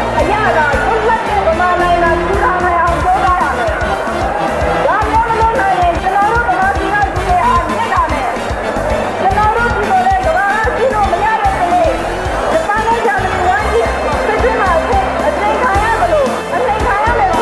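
A Burmese song: a voice singing a wavering melody over instrumental backing with a steady beat.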